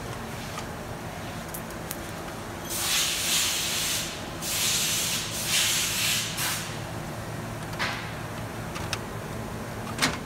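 Hinge pin being pulled out of a plastic modular conveyor chain while the links are worked apart: two rasping, rubbing stretches, one about a second long and one about two seconds, then a couple of light clicks, over a steady low hum.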